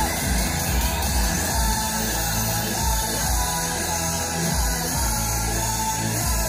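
Loud ride music from a fairground chain swing ride's sound system, with a steady bass beat.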